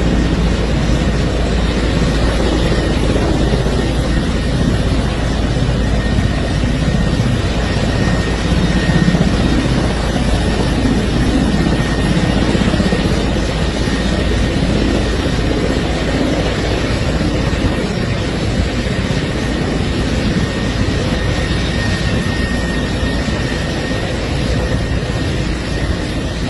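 Military helicopter running on the ground, its engines and rotor making a steady, loud noise with a faint high whine.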